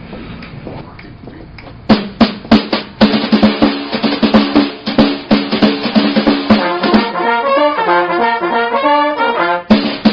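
A Dixieland jazz band starting a tune. After about two seconds of quiet, a few sharp hits lead in, and about a second later the full band comes in with brass and a drum kit. Near the end a single melody line plays briefly over softer drums before the whole band returns.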